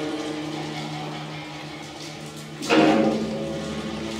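Guzheng strings ringing and fading, over a low held tone. About two and a half seconds in, a sharp new pluck or strike sets several notes ringing.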